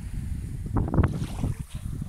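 Wind buffeting a phone microphone: an uneven low rumble that gusts, with a stronger gust about a second in.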